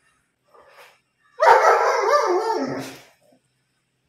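German Shepherd giving one drawn-out, rough bark that starts sharply about a second and a half in and fades out after more than a second.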